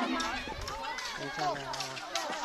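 Children's voices chattering and calling, several at once and not close to the microphone.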